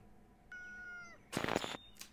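A single high, cat-like call, held steady for about half a second and then dropping in pitch as it ends. A short, hissy burst follows soon after.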